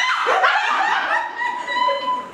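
Women laughing, with one long high-pitched held note of laughter in the second half.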